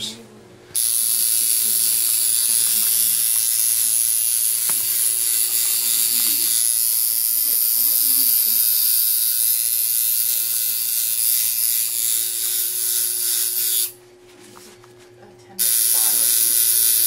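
Electric tattoo machine running with a steady buzz while tattooing skin. It starts up just under a second in, cuts off about two seconds before the end, and starts again just before the end.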